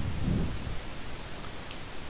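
Steady hiss of a recording microphone's background noise, with a soft low rumble in the first half second or so.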